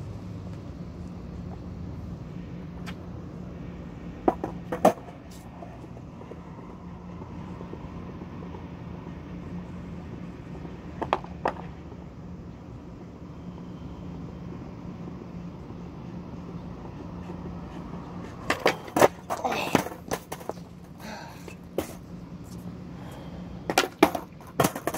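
Skateboard on concrete during trick attempts: a few sharp clacks of the board, then, from about 18 seconds in, a run of loud clacks with rough wheel-rolling noise as the board comes down and hits the ground, and more clacks near the end. A steady low hum runs underneath.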